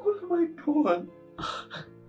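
A man sobbing and crying out in distress, then two quick gasping breaths about a second and a half in, over soft background music with sustained notes.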